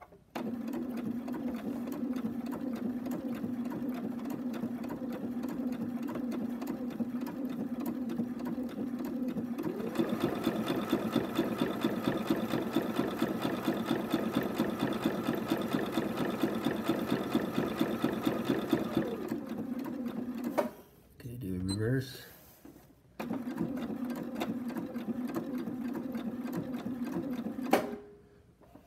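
Bernina sewing machine stitching a zigzag through a paraglider line with a fast, even needle rhythm. It speeds up about a third of the way in and slows again about two thirds in. It stops briefly, then resumes at the slower speed near the end.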